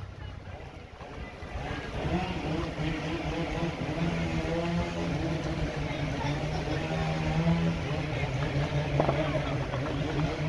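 A vehicle engine running steadily at low speed. Its hum grows louder about a second and a half in and drops a little in pitch about three-quarters of the way through.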